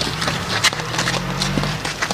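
A quick, uneven run of sharp clip-clop-like knocks over a low steady hum.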